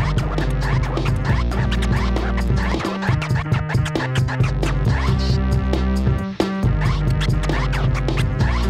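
Vinyl scratching on a turntable, rapid back-and-forth record strokes cut over a beat with heavy bass. The bass drops out briefly about three seconds in and again a little past six seconds.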